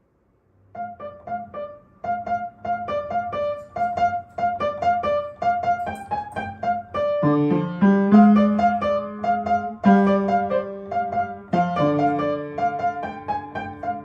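Upright piano played solo. A quick repeating figure of notes starts about a second in, and a lower left-hand part joins about halfway through, making the playing fuller and a little louder.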